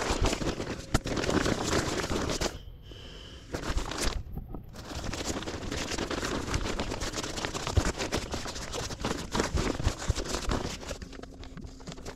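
Nylon sleeping bag and inflatable pillow rustling and crinkling as they are rolled up and squeezed by hand, with two brief lulls about three and four and a half seconds in.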